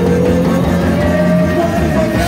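Loud live band music with a long held melodic note gliding slowly upward in pitch over a steady bed of low instruments.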